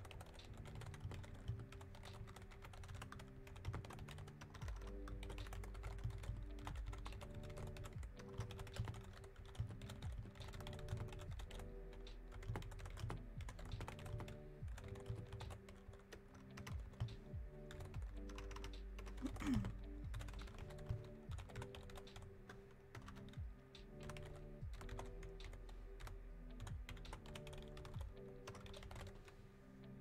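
Typing on a computer keyboard: quick, irregular keystrokes while a short message is typed out, over soft background music with a repeating bass.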